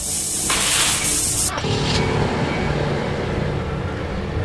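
Tesla coil of about three quarters of a million volts discharging: a loud hissing crackle of sparks arcing from its toroid that cuts off suddenly about a second and a half in, leaving a low steady drone.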